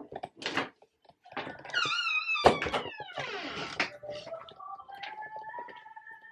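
A door swinging and shutting with one sharp thunk about halfway through, with handling noise from the phone being carried. A faint steady tone follows near the end.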